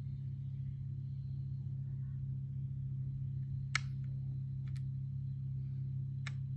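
Steady low hum, with a sharp click a little past halfway and a fainter click about a second later: buttons pressed on a handheld gimbal's handle.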